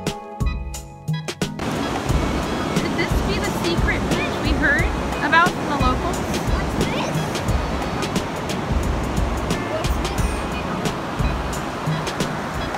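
Background music that cuts off suddenly about a second and a half in, giving way to ocean surf breaking on a sandy beach with wind rumbling on the microphone. A few brief high chirps come a few seconds after the cut.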